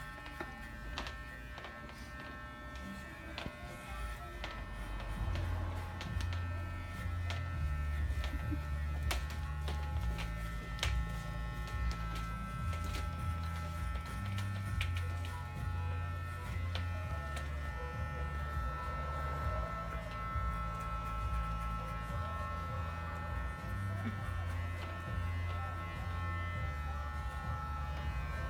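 Electric hair clippers buzzing steadily as they cut a child's hair. Music with a stepping bass line plays underneath from about five seconds in.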